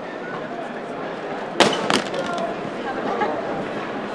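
A drop-proof education laptop dropped onto the floor: one sharp crack of impact about a second and a half in, followed by a lighter knock as it bounces.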